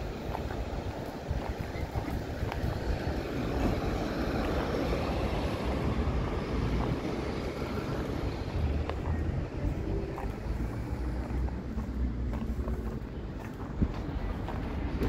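Street ambience heard by a walking handheld microphone: low wind rumble on the microphone throughout, with a vehicle swelling past and fading away in the middle.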